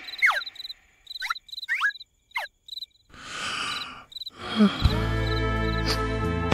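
Crickets chirping in short repeated pulses, broken by a few quick falling squeaks and a breathy whoosh. Slow sustained music with a low bass comes in about five seconds in.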